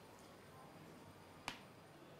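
One sharp click about one and a half seconds in: a knife blade knocking against the metal tray while cutting through set coconut burfi. Otherwise near silence.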